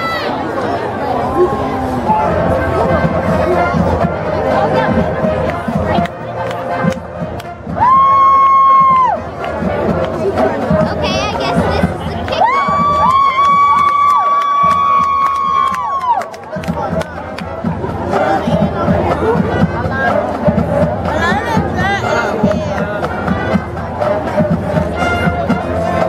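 Marching band playing, with a loud held note about eight seconds in and a longer held chord from about twelve to sixteen seconds in, over continuous crowd chatter and cheering from the stands.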